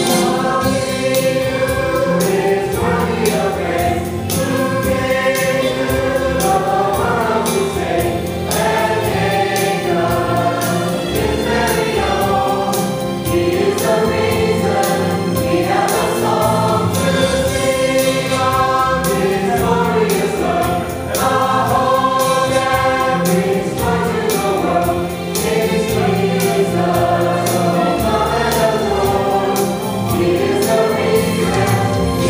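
Mixed choir of women's and men's voices singing a slow Christmas song in parts, over an accompaniment with a steady beat.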